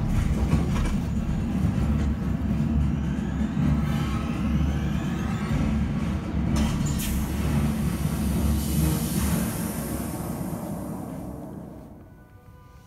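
Deep, loud rumble like a passing train or heavy vehicle from a 4DX cinema's sound system, with a high hiss over it in the second half, dying away near the end.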